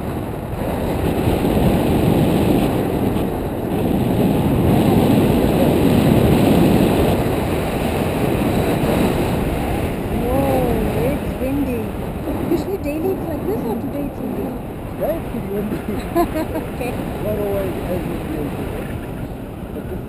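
Wind rushing over the camera microphone in flight under a tandem paraglider, a heavy rumbling buffet that is loudest in the first half and eases about halfway through. In the second half short rising-and-falling voice sounds come through the wind.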